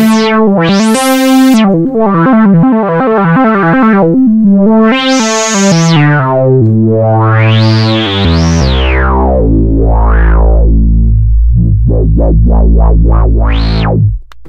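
Synth bass patch 'Hyper Phat 1' from UVI's sampled Saturn-6 analog synth, played live from a keyboard: a run of stepping notes with the filter swept open and shut again and again, so the tone rises and falls in brightness. Later a low bass note is held under quick, short filter blips, and the sound cuts off suddenly at the end.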